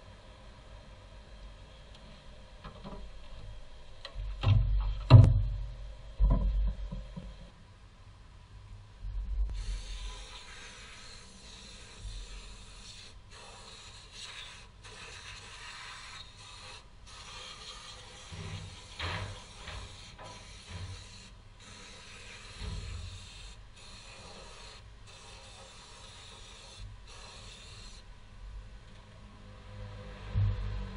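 A few heavy knocks about four to seven seconds in, the loudest sounds here. Then an aerosol spray can hisses in repeated bursts, short and long, for most of the rest.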